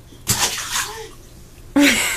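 Rubber bath ducks tossed into bathwater land with a splash about a third of a second in. Laughter starts near the end.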